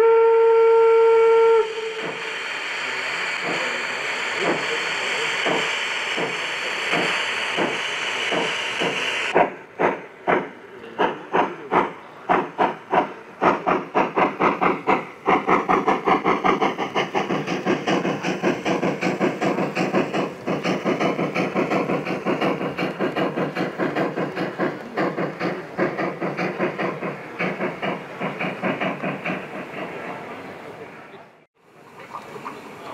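Sound system of a Gauge 1 model German steam locomotive: a short whistle blast, then several seconds of steam hissing, then exhaust chuffs that start slow and quicken into a steady fast beat as the engine pulls away.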